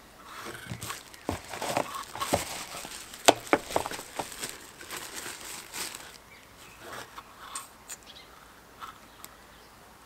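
Packing paper and plastic wrapping rustling and crinkling as items are taken out of a cardboard box, with a few sharp clicks in the first few seconds. The handling goes quieter about six seconds in.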